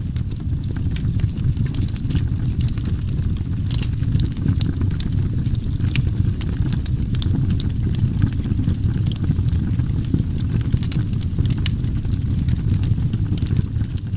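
A steady low rumble with dense, irregular crackling on top, laid under the end cards, faded in and faded out at the end.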